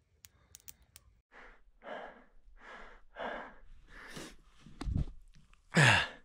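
A man breathing hard and fast, about two rough breaths a second, winded from climbing at high altitude. There is a low bump near the end.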